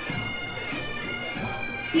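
Bagpipe band playing, a steady drone held under the melody.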